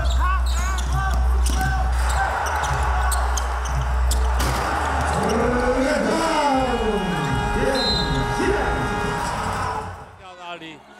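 Basketball game sound on a hardwood court: a ball being dribbled over a steady low hum. From about halfway through, several loud voices shout and whoop with swooping pitch.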